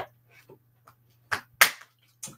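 Snap-lock plastic tub of embossing powder being closed and set aside: a sharp click at the start, a few faint taps, then two sharp clicks in quick succession about a second and a half in, the second one the loudest.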